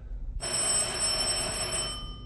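Electric doorbell ringing for about a second and a half, then stopping, its ring lingering briefly as it dies away.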